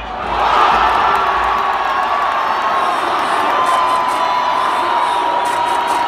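Football stadium crowd cheering, swelling sharply about half a second in as a shot goes in near the goal, with one long held tone running through the cheering.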